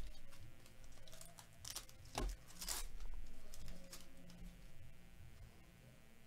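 A foil 2023 Topps Series 1 baseball card pack being torn open, its wrapper crinkling in a cluster of short crackling bursts about two seconds in, followed by quieter handling of the cards.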